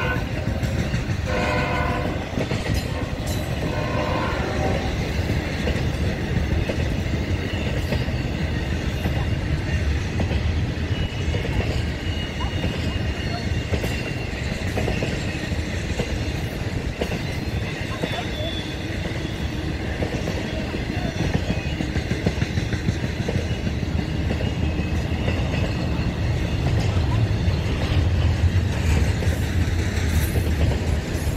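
Florida East Coast Railway freight train: the locomotive horn sounds three blasts in the first few seconds, then the double-stack container cars roll past with a steady rumble and rattle that grows louder near the end. A faint high squeal comes from the wheels on the curve.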